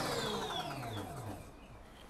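Electric motorcycle rear hub motor whining as the wheel spins free on the stand, the whine falling in pitch and fading out over about a second and a half once the throttle is released: regenerative braking on deceleration is bringing the wheel to a quick stop.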